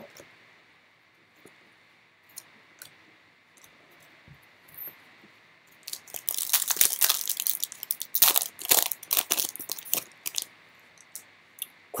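A foil pack of Panini Elite basketball cards being torn open, its wrapper crinkling and crackling in quick bursts for a few seconds starting about halfway through, after a near-quiet start with a few faint taps.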